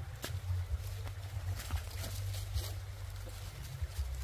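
A stick poking and scraping among dry leaves on the ground, with footsteps on the leaves: scattered sharp crackles and clicks over a steady low rumble.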